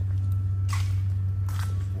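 A steady low machine hum, with two brief hissy scrapes or rustles, one just under a second in and one near the end.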